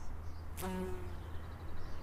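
A bumblebee's wings buzzing in one short burst about half a second in, lasting about a third of a second.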